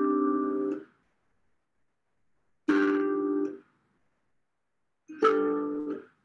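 Irish harp: three plucked chords, each ringing for under a second and then cut off abruptly to silence as the strings are damped by hand, the damping gesture muting the microphone.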